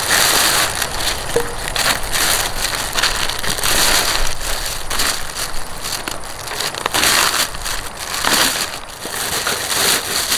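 A thin plastic carrier bag and snack wrappers crinkling and rustling in uneven, crackly handfuls while rubbish is stuffed into the bag and its handles are gathered.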